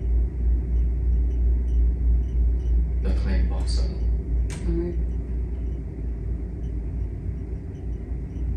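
A steady low rumble runs underneath throughout. A man's voice says a short phrase about three seconds in.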